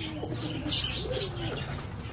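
Domestic pigeons cooing: low, softly rising and falling calls, twice, with a brief rustle of feathers a little before the middle.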